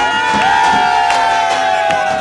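Young men letting out one long, loud shout together that slowly falls in pitch, over dance music.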